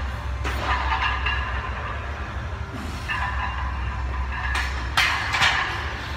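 Heavy barbell back squat set: bursts of the lifter's hard breathing between reps over a steady low hum, with a couple of sharp knocks about five seconds in.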